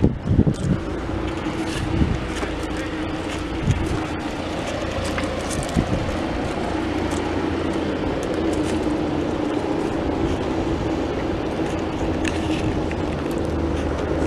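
Tractor engine idling steadily, with a few short knocks in the first few seconds.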